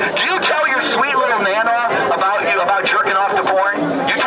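Speech: a man talking through a handheld microphone and portable loudspeaker, with other voices overlapping.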